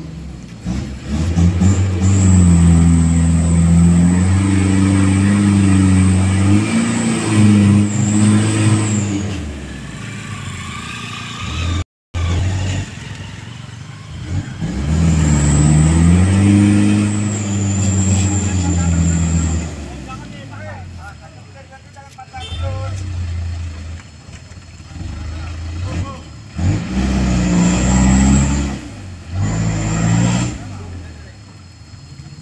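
Diesel engine of a Mitsubishi Fuso light truck loaded with palm fruit, revved hard in three long spells of several seconds each as it struggles to climb out of deep mud, dropping back between them, with a high whine riding on the engine note.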